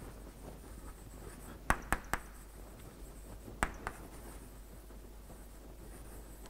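Chalk writing on a blackboard: faint scratching with a few sharp taps as the chalk strikes the board, a cluster of three about two seconds in and two more near four seconds.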